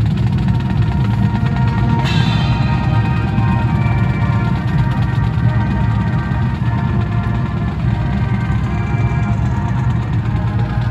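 University marching band playing. Drums pulse throughout, and the brass comes in sharply about two seconds in with held chords over the drums.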